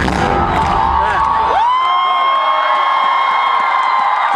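Concert crowd cheering as the band's music drops out about a second and a half in. One high voice then rises into a single long scream that holds for about three seconds.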